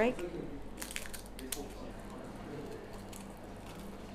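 Scissors snipping through a tube of brittle, hardened spun-caramel strands: a few crisp crackling snips about a second in, then fainter crackling.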